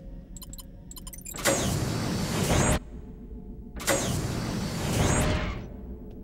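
Sci-fi sliding door sound effect: a few faint clicks as a wall panel is touched, then two hissing whooshes of about a second and a half each, over a steady low hum.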